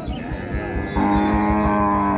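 A single long, steady moo from a cow, starting about a second in.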